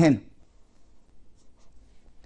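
Felt-tip marker drawing a short arrow on paper: a few faint, brief scratches of the tip.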